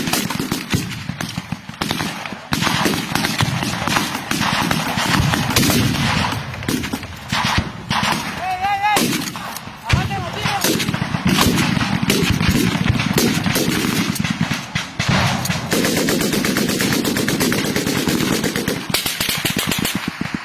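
Heavy small-arms gunfire in combat: rapid shots and automatic bursts, many overlapping and almost without pause.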